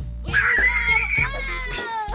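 A toddler's long, high-pitched squeal that holds for about a second and a half and dips in pitch at the end, over background music with a steady bass beat.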